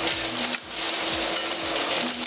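Vaccine production-line machinery running, with a steady hum and a rapid clatter and clinking of small glass vials.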